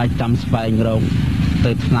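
A monk's voice speaking in Khmer, giving a Buddhist dhamma talk, over a steady low background rumble.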